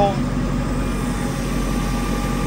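JCB 3CX backhoe's 74 hp JCB EcoMax diesel engine running steadily, heard from inside the cab, with a faint steady whine coming in about half a second in.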